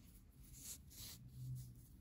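Faint soft rubbing and rustling of yarn being handled as a needle is worked through it, close to silence between the small rubs.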